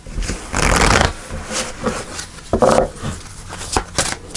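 A deck of tarot cards being shuffled by hand, in several short bursts of card noise. The longest and loudest comes about half a second in.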